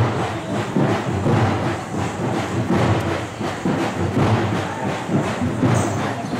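Loud rhythmic drumming, a steady pulsing beat with no speech over it.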